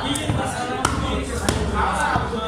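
Broad knife chopping through a barramundi fillet onto a wooden log chopping block: three sharp knocks, about two thirds of a second apart.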